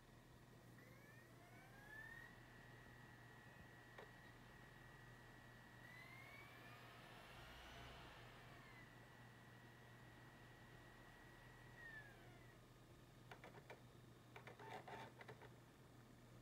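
Near silence: faint room tone with a thin, steady high whine that rises in pitch about two seconds in and drops again near twelve seconds, and a few soft clicks near the end.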